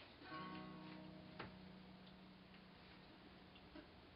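Acoustic guitar: one faint chord plucked about a third of a second in and left to ring and slowly fade, with a single soft tick about a second later.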